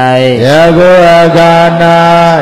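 Buddhist monk's voice chanting scripture in a slow, drawn-out recitation: a short syllable, then one long, steady held note.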